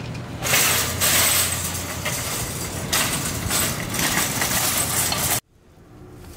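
Metal wire shopping cart rattling and clinking as it is pushed along, cutting off abruptly near the end.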